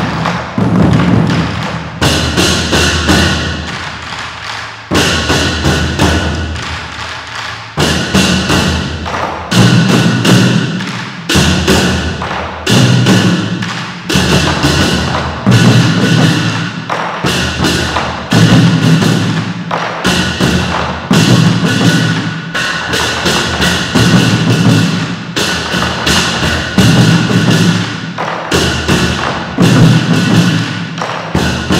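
An ensemble of Chinese drums struck together in a driving rhythm: loud accented strokes about every one and a half seconds, with quicker strokes filling the gaps between.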